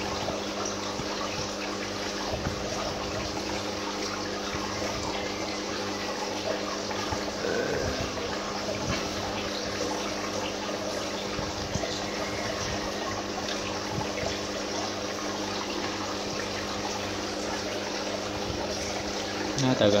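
Small submersible aquarium pump running: a steady electric hum under continuous splashing and trickling water where its outflow churns the surface.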